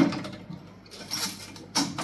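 A press being pushed down onto pickling cucumbers in a container: a few light knocks and clicks spread over two seconds.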